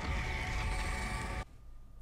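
Soundtrack of the TV episode playing under the reaction: a steady low rumble and hiss with a faint high tone, which drops away suddenly about one and a half seconds in.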